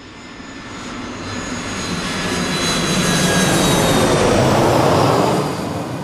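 Jet airliner flying overhead: its engine noise with a high whine builds steadily, is loudest about five seconds in, then falls away.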